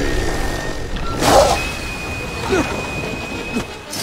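Dramatic background music over battle sound effects: a steady low rumble, with a loud rushing hit just over a second in and a high held tone after it.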